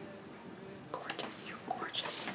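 A woman's faint whispered murmur in the second half, over quiet room tone.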